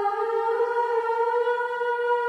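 Gregorian chant: a voice singing one long held note, drifting slightly upward in pitch.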